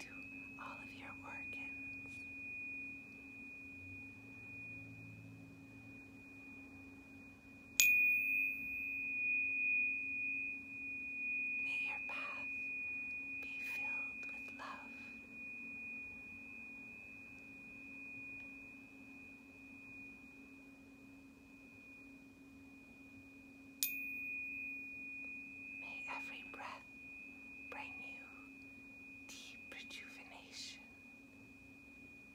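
Tuning fork ringing with a steady high pure tone, struck afresh twice, about eight seconds in and again about sixteen seconds later, each strike starting with a sharp tap and ringing on. A lower steady tone hums underneath throughout.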